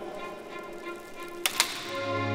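Smile spacecraft magnetometer boom deploying on release, with two sharp clicks about one and a half seconds in as its hinges latch, over soft background music.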